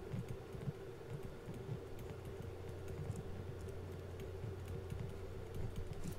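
Faint, irregular tapping and clicking of a stylus writing on a pen tablet, over a steady low electrical hum.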